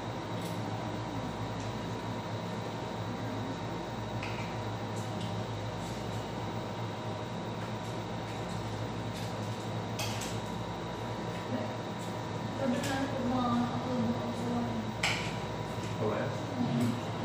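Occasional short clinks of cutlery against dishes during a meal, over a steady hum in the room.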